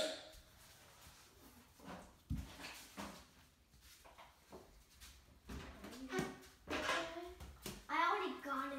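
A low thump a little over two seconds in, then faint, indistinct child voices over the last few seconds.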